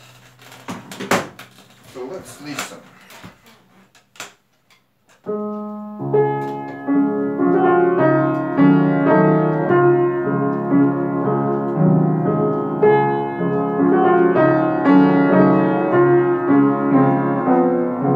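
A few seconds of knocks and clatter, then an upright piano: a single chord about five seconds in, and from about six seconds a waltz played steadily with many notes.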